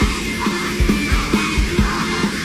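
Loud upbeat pop-rock music from a live stage performance, driven by a steady kick-drum beat about twice a second, with voices shouting over it.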